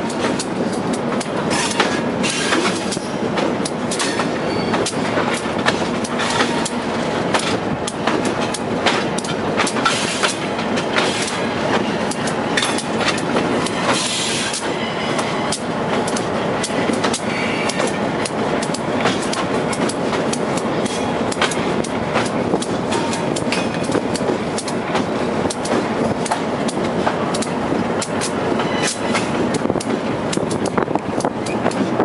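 Diesel switcher locomotive rolling along jointed track, heard from its own front platform: a steady running rumble with irregular wheel clicks and knocks over the rail joints.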